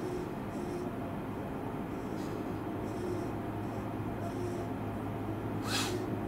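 Cabin of a Tobu 500 series Revaty electric train standing at a station: a steady low equipment hum with soft, intermittent hisses. Near the end comes one short, sharper hiss, like a release of compressed air.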